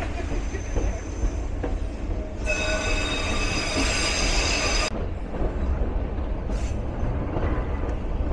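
White Pass & Yukon Route narrow-gauge train running with a steady low rumble. About two and a half seconds in, its steel wheels squeal high and loud against the rails for a couple of seconds, then stop suddenly.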